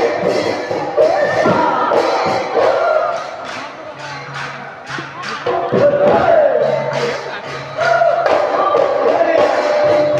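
Live Bihu music: drum strokes under singing and loud group shouts from the performers and crowd. It dips in loudness for a couple of seconds in the middle.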